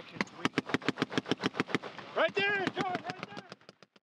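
Automatic weapon fire: a fast, steady run of shots about eight a second, ending abruptly just before the end.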